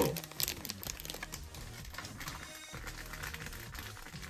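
Thin plastic packaging being handled, crinkling in a quick run of small ticks, with quiet background music underneath.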